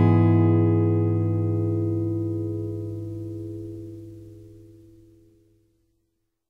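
Background music ending on a strummed guitar chord that rings out and fades away over about five seconds.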